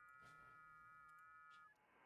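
Near silence: faint room tone with a few faint, steady high tones that stop together near the end.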